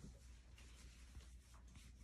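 Faint soft rubbing of hands together, a hand-hygiene rub done without running water, over a low steady room hum.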